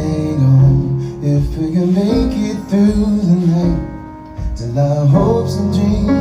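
Live band music: guitar accompanying sung vocals, with a short dip in level about four seconds in before the voices come back in.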